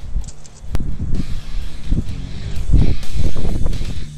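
Wind buffeting a helmet-mounted camera's microphone in irregular low gusts that grow loudest in the second half, with one sharp click about three-quarters of a second in.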